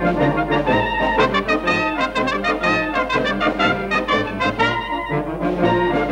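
Brass band music with quickly changing melody notes over a steady, repeating bass line.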